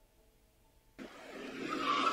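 Near silence for about a second, then a car on the film's soundtrack comes in suddenly and grows louder as it speeds along.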